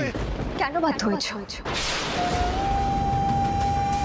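A dramatic TV-serial background score: a deep rumble under the last words, a sudden swell of noise a little before halfway, then a long held flute note that rises slightly in pitch.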